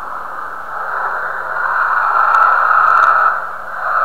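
Muffled, static-like hiss from an unclear recording, swelling to its loudest in the middle and dropping off a little past three seconds in, over a faint steady hum.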